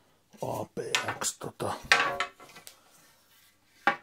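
Composite hockey sticks clattering against each other as one is picked up from the pile, a run of knocks in the first half and one sharp knock near the end.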